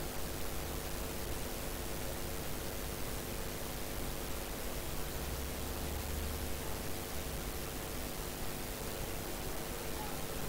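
Steady hiss with a faint, steady low hum underneath: the background noise of the recording, with no distinct event.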